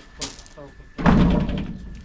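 Men speaking, with a short hiss near the start and a heavy thud about a second in.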